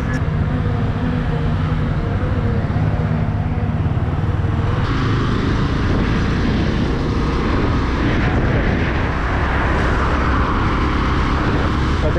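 Motorcycle engine running steadily, joined about five seconds in by a rush of wind noise as the bike rides along.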